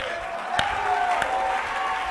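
Congregation clapping, with a faint steady tone underneath.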